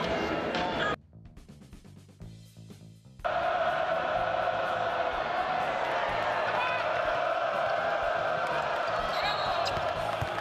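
Basketball game in an arena: steady crowd noise with the ball bouncing on the hardwood court and a few short sneaker squeaks. It drops out suddenly about a second in and comes back about two seconds later.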